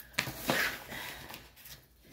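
Handling noise from a large diamond painting canvas being worked and rolled: a sharp click, then a short rustle that fades away.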